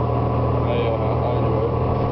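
City transit bus heard from inside the passenger cabin while under way: a steady engine drone made of several constant tones, with no change in pitch.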